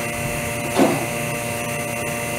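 Vacuum pump running steadily with a constant hum, pulling the air out of the lamination bag over a prosthetic socket. A brief human vocal sound comes a little under a second in.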